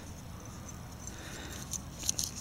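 Quiet, steady background noise with a low hum and no distinct sound event.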